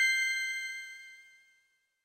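A bell-like chime sound effect accompanying a section title card, several clear tones ringing on and dying away, gone by about a second and a half in.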